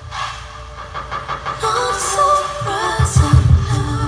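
Music for a dance routine. Held melodic tones drop back in the first second and a half, then return, and a run of deep bass hits comes in about three seconds in.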